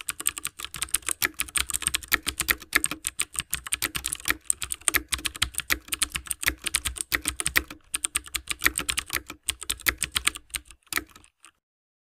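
Rapid typing on a computer keyboard: a fast, uneven run of keystroke clicks that stops about eleven seconds in.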